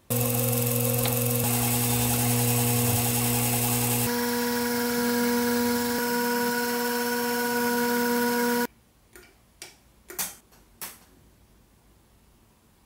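Small benchtop drill press motor running steadily while a fine bit drills a small aluminium part, its tone shifting twice. It stops suddenly, followed by a few short scrapes and clicks of a small hand-turned tool working the metal.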